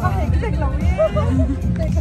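Women talking over background music and the babble of a crowd.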